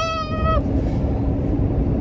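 A man's short, high-pitched held cry, rising then holding for about half a second right at the start, mimicking a bite into a scalding-hot pizza roll. After it, steady road hum inside a moving vehicle's cabin.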